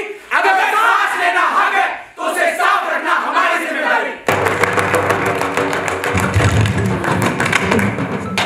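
Several performers shouting a line together in unison, then about halfway through, recorded music with a steady beat starts abruptly and carries on.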